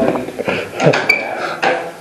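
A few short clinks and knocks from objects being handled, scattered over two seconds, the sharpest about a second in.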